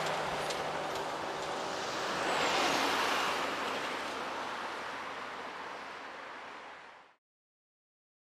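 Street traffic: vehicles driving past on a road, one swelling past about two to three seconds in, then the sound fades away and stops just after seven seconds.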